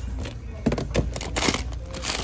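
Clear plastic bags crinkling and rustling as a hand rummages through a plastic bin of bagged items, with a few sharp clicks and knocks in the second half.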